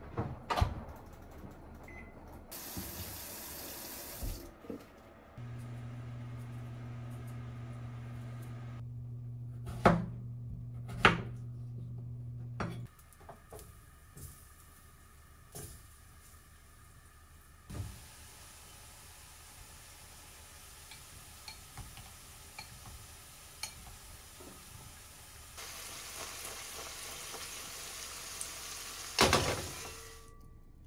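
A run of kitchen work: a brief hiss of running water, then a microwave oven humming steadily for about seven seconds with a couple of knocks. After that comes a quiet hiss with faint tiny pops as pieces of turnip shallow-fry in oil in a pan.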